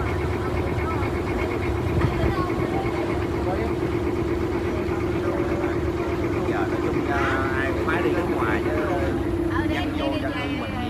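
A river tour boat's engine running steadily with a constant hum, heard from on board beneath the canopy, with passengers' voices over it.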